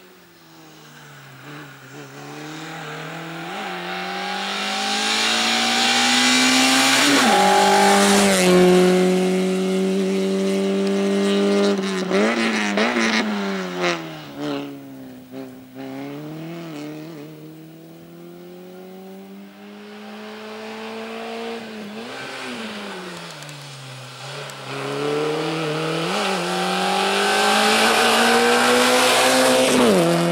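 Small hatchback race car's engine revving hard through a cone slalom, the pitch climbing and dropping over and over with the throttle and gear changes. It holds high revs about eight to twelve seconds in, then lifts and picks up again, rising to full revs near the end.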